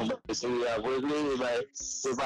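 Only speech: a voice talking or chanting in short phrases, with brief pauses between them.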